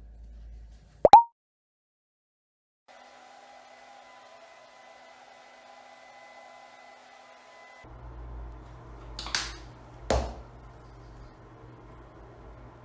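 A single loud, short pop with a quickly falling pitch about a second in, then a moment of dead silence. After that comes faint room tone with a low hum, broken by two short sharp taps near the end.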